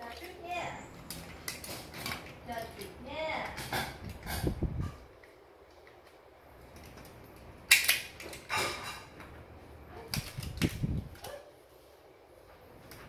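Hard plastic toy pieces clicking and clacking as red armour parts are handled and fitted onto a plastic Baymax figure, with a sharp clack a little under eight seconds in and a few more clicks after it.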